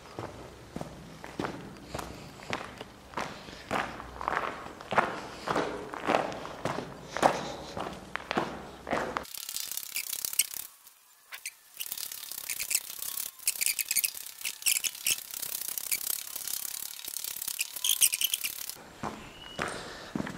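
Footsteps walking through a disused railway tunnel, a steady pace of just under two steps a second with a hollow echo. About halfway through, the sound turns thin and crisp, with scattered clicks.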